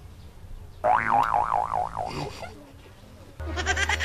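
A cartoon-style comedy sound effect that starts suddenly about a second in, its pitch wobbling up and down about five times a second for a second and a half. Near the end comes a short burst of high, pulsing laughter.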